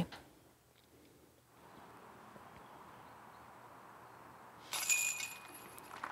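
A disc golf putt striking the hanging metal chains of the basket, a made putt, about three-quarters of the way through. It is a brief jingle of chains with a few high ringing tones that die away within a second, over a faint outdoor background.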